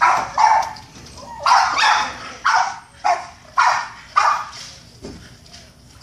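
Boston terrier barking at a squirrel up a tree: a quick series of about eight short, rough barks that stop about four and a half seconds in.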